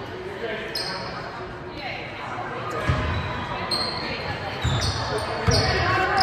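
A basketball bouncing on a hardwood gym floor, a few low thumps from about halfway in, with brief high sneaker squeaks and voices echoing around a large gym.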